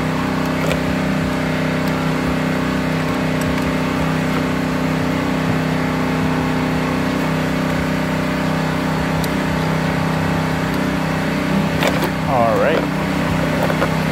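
A steady low hum from a nearby running machine, with a few faint metallic clicks as a wrench works the positive terminal of a car battery.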